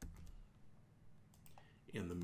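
A few faint, separate clicks of computer keys, one at the start and a couple more about a second and a half in. A man's voice starts talking right at the end.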